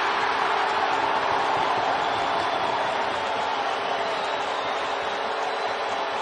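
Hockey arena crowd cheering a home-team goal, a steady wall of noise that eases slightly toward the end, with a held chord of steady tones, typical of the arena goal horn, sounding underneath.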